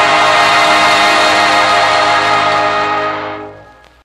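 A dance orchestra's final held chord closing the record, fading out about three seconds in.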